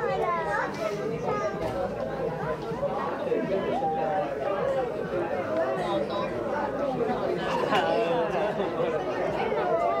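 Several people talking at once: continuous overlapping chatter of voices close to the microphone.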